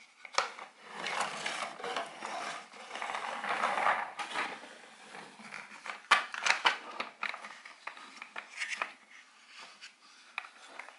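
Plastic toy Volvo construction vehicles being handled: plastic parts scraping and rattling for a few seconds, then a quick run of sharp plastic clicks as the bucket and arm are moved, with smaller clicks after.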